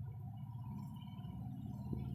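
Steady low background rumble with a faint thin tone above it, unchanging throughout.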